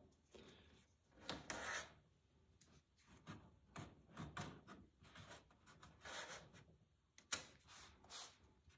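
Near silence with faint handling noises: hands rubbing and shifting a glued wooden end block against the end of a wooden paddle board, with one sharper click about seven seconds in.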